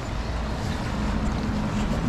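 Steady rush of river water, with wind buffeting the microphone in a low rumble.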